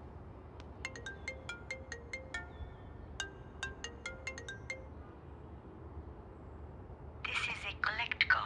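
Mobile phone ringtone: a short tune of bright, pitched notes, played twice and then stopping. A voice begins speaking near the end.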